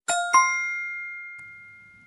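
Bell-like chime sound effect, struck twice in quick succession, its tones ringing on and slowly fading away; it marks a correct answer as the syllable drops into place.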